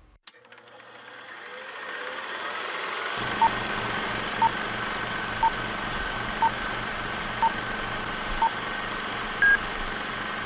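Film projector running with a steady, even mechanical clatter that fades in over the first three seconds. Over it, six short beeps sound one second apart, then a single higher beep near the end, like a film countdown leader.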